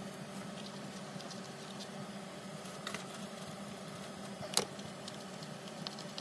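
Light paper rustling and small taps as napkin-covered index cards are handled on a tabletop, with a sharper click about four and a half seconds in.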